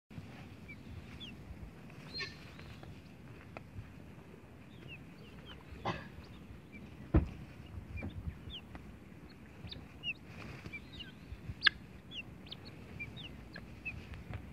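Helmeted guineafowl calling near the microphone, with many short, high chirps scattered throughout. Two sharp clicks stand out, one about halfway through and one near the end.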